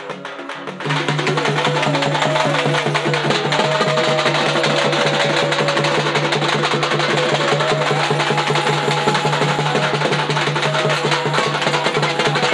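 Fast, dense festival drumming on large stick-beaten drums starts suddenly about a second in. It plays over a steady low drone and a wavering melody line.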